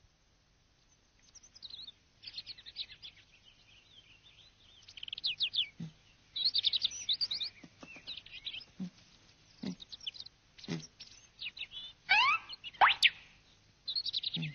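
Birdsong from a cartoon soundtrack: clusters of short, high chirps and trills. A few soft, low knocks are scattered through it, and quick rising whistle-like glides come near the end.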